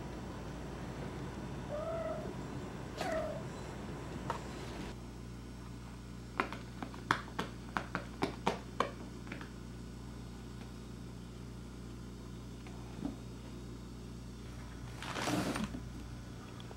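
A house cat gives two short meows early on. A quick run of sharp taps or clicks follows in the middle, and a brief rustling scrape comes near the end.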